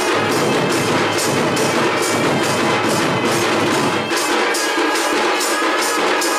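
Oriya folk dance music of drums with jhanjh hand cymbals, the cymbal strokes falling evenly about three times a second in a steady rhythm.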